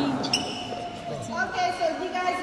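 A short high squeak, like a sneaker sole on a wooden floor, about a third of a second in, followed by people talking in a large hall.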